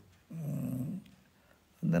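A man's short, low hummed 'hmm', lasting under a second.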